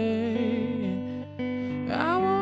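Slow solo song: an electric guitar rings out held chords while a man sings over it.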